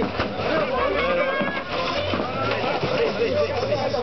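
Voices of several people talking over one another, the words unclear.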